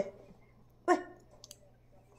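A short voice sound about a second in, then a faint click or two against a quiet room.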